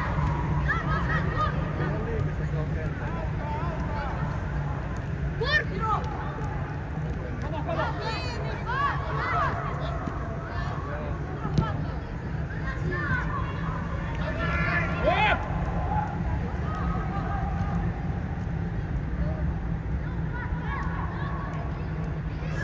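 Youth football players and coaches shouting calls now and then, echoing under a steady low hum, which is likely the air dome's inflation blowers. One sharp ball kick comes just past halfway.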